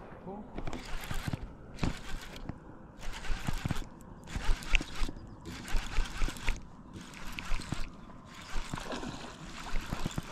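Baitcasting reel cranked close to the microphone: a whirring hiss that comes and goes in uneven spells, with light knocks from the handle and hands.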